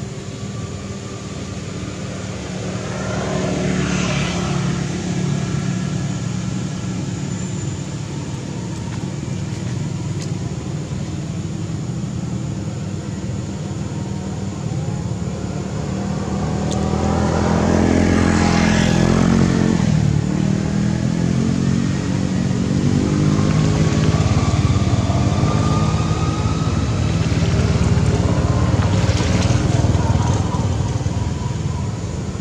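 Road traffic: a steady engine rumble with several motor vehicles passing, each rising and falling in pitch as it goes by, the loudest pass about two-thirds of the way through.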